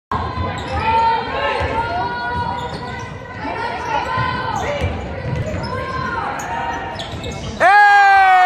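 A basketball is dribbled on a hardwood gym floor, the thumps mixed with players and spectators calling out and echoing in the gym. Near the end a loud, long call cuts in.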